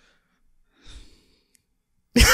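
A man's single short, faint breath out about a second in, a held-back laugh at a joke, against near silence. A tiny click follows shortly after.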